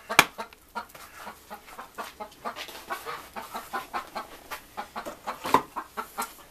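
Chickens clucking over and over close by, with a sharp knock about a quarter second in and another near the end as a wooden sand-casting flask is knocked to shake out its green sand.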